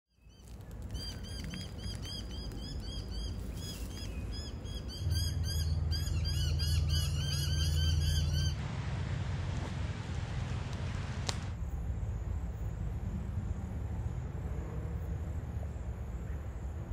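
Birds calling outdoors, many short repeated chirps overlapping over a low rumble. The calls stop abruptly about eight and a half seconds in, leaving a steady outdoor hiss with one sharp click a few seconds later.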